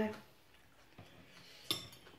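Metal spoon clinking once against a ceramic dinner plate near the end, with a fainter tap of cutlery about a second in.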